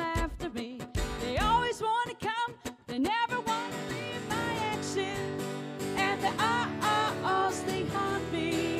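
Acoustic guitar strummed in a choppy, rhythmic pattern, changing about three and a half seconds in to sustained, ringing chords. A woman's voice sings wordless phrases over it.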